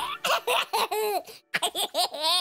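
A cartoon baby's childlike laughter: a run of short giggles that rise and fall in pitch, with a brief pause about one and a half seconds in.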